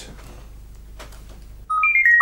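Electronic calculator key beeps: a quick run of short, clear tones, each at a different pitch, starting near the end as buttons are pressed, after a quiet stretch with only a faint hum.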